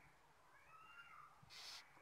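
Near silence with one faint, high call that rises and falls over about half a second, then a short hiss just before the end.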